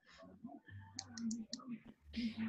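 A quick run of faint computer-mouse clicks about a second in, over a low murmur of voice.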